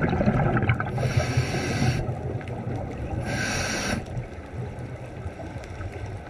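Underwater recording of a scuba diver breathing through a regulator: two hissing inhalations, one about a second in and another past three seconds, over a low bubbling rumble that fades toward the end.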